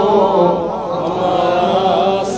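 A man's voice chanting a devotional salam through a microphone, drawing out one long, wavering sung note without distinct words.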